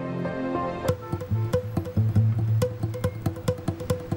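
Dramatic background score. Held chords give way, about a second in, to a quick, ticking percussion rhythm over a low bass note.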